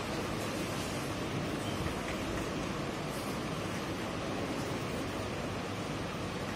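Steady, even background hiss of the room, with faint scratches of chalk on a blackboard as words are written.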